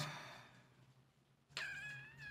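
A cat meowing once, faintly, about a second and a half in: a single drawn-out, slightly wavering meow.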